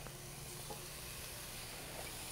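Faint, steady sizzle of carrots, red peppers and broccoli frying in a stainless-steel skillet.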